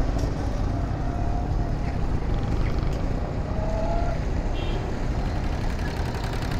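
Street traffic noise: a steady low rumble of vehicles, with a brief faint whine about three and a half seconds in.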